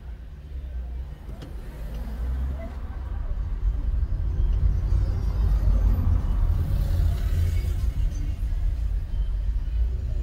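A car's low road and engine rumble heard from inside the cabin, growing louder over the first few seconds as the car pulls away from a standstill in traffic and picks up speed, then holding steady.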